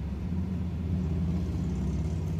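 A steady low rumbling hum with no clear rhythm.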